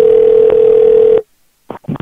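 A telephone line's steady single-pitched tone, heard through the phone line with its thin, band-limited sound, cutting off suddenly about a second in, followed by a few short clicks as the line connects.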